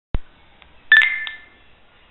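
A sharp click near the start, then about a second in another click with a short electronic beep that fades away over about half a second.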